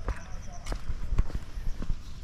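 Footsteps on a concrete road: a few irregular thuds in the second half.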